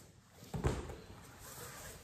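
A dull thump about half a second in, then faint rustling, as a person turns over on an exercise mat and shifts a padded weight on her shins.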